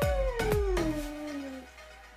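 A long hummed "mmm" of relish over a mouthful of food, rising and then slowly falling in pitch over about a second and a half, with background music with a beat.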